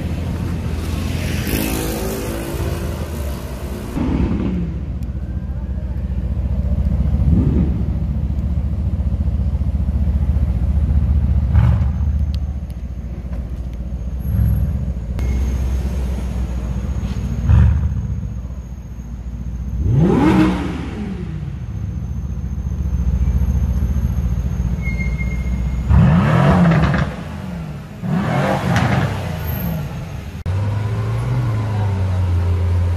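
Mercedes-AMG C-Class coupé's engine rumbling at low speed, blipped several times so the pitch sweeps up and falls back, with a couple of sharp cracks in between. The last two revs come near the end, as the car drives into an underground car park.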